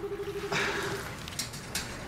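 A telephone's electronic ringer warbling briefly on one fast-trilling tone, then stopping about a second in. A short rushing hiss overlaps it about half a second in.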